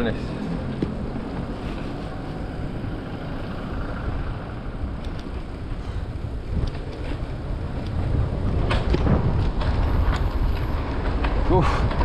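Wind rumbling on the microphone of a bike-mounted action camera, with tyre noise from a mountain bike rolling over an asphalt street. It grows louder in the last few seconds, as a car comes along.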